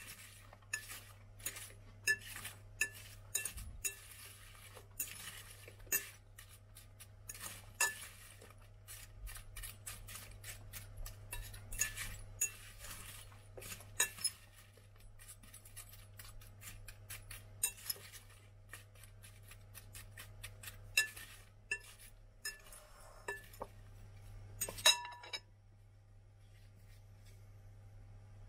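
Diced apple pieces being tossed by hand in a glass mixing bowl, with irregular clinks and taps against the glass and a sharp knock near the end. A steady low hum runs underneath.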